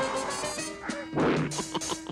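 Cartoon score with a sharp whack-and-crash hit about a second in, played over the music.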